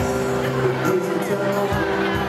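A live band playing, with acoustic guitar, electric bass and a group of voices singing.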